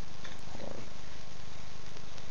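Steady, fairly loud background noise: a hiss across the range with a low, fast-pulsing rumble underneath, and no speech.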